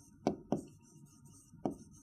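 A pen tip tapping on the glass of an interactive display screen while writing: three short, sharp taps, two in quick succession near the start and one more a little past the middle.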